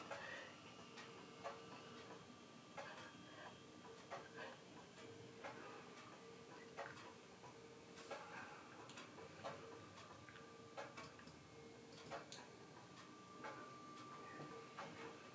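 Near silence: room tone with faint, irregular small clicks and a faint on-and-off hum.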